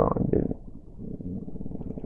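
A man's voice says one short word, then makes a low, rough, drawn-out hesitation sound, a creaky throat rumble, for over a second while he searches for his next words.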